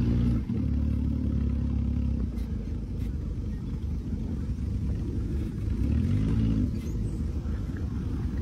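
Dune buggy engine running under way across sand, with a rumble of driving noise. The engine pitch holds steady early on, then rises and falls briefly about six seconds in.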